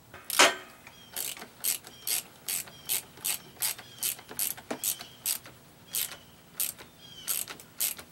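Hand ratchet clicking in a steady run of short strokes, about two to three clicks a second, as bolts are run up on the water pump housing of an Evinrude 225 outboard's lower unit.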